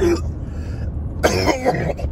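A man coughing, hand over his mouth: a short cough at the start and a longer, harder one past the halfway point. Under it is the low steady rumble of a car's cabin.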